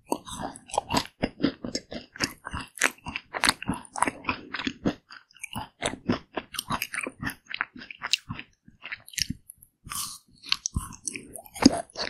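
Close-miked chewing and biting of a Pig Bar ice cream bar, its pink crumb coating crunching in dense, irregular crackles. A fresh bite is taken from the bar partway through, and there are two short pauses in the chewing.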